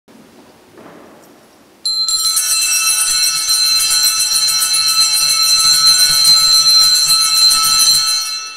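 Altar bells shaken in a continuous, rapid ringing that starts suddenly about two seconds in, sounding the blessing as the priest raises the monstrance.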